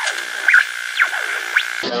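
A radio being tuned: a steady whistle over static, crossed by squealing sweeps that rise and fall as the dial moves, giving way suddenly to music near the end.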